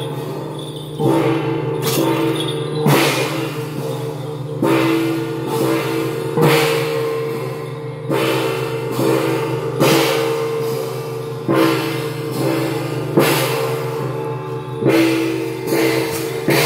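Hand gongs and cymbals of a Taiwanese temple procession troupe struck together in a slow, steady beat, about once every second and three quarters, the gong ringing on between strikes.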